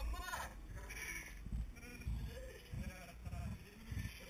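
A group of people chatting and laughing indistinctly, with a quavering laugh near the start and another about a second in.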